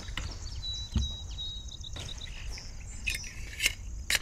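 A Colt LE6940 AR-15 upper receiver is being fitted onto a Colt 901 lower through a conversion block. There is a soft knock about a second in and a few light metal clicks near the end, over a faint high steady chirp in the background.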